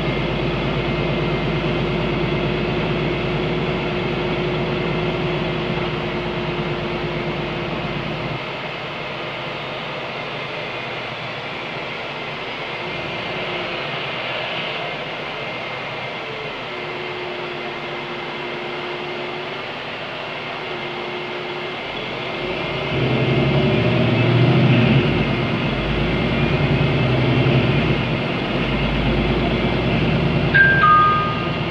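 Inside the cabin of an Ursus CitySmile 12LFD city bus, its Cummins ISB6.7 diesel engine and Voith automatic gearbox run with a steady low hum and a held tone. About eight seconds in the sound drops to a quieter running. From about 22 seconds the engine comes in loud again under load, as when the bus pulls away.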